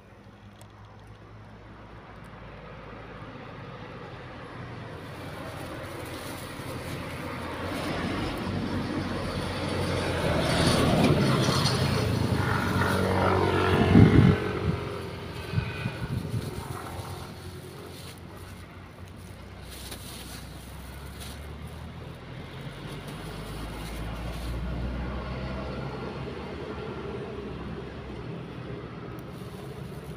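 A motor vehicle passing on the road: its engine and tyre noise grows steadily louder, is loudest about fourteen seconds in, then fades away. A second, fainter swell of vehicle noise follows about ten seconds later.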